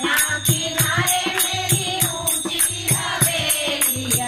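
Women singing a Hindu devotional kirtan into a microphone, over a steady beat of hand percussion.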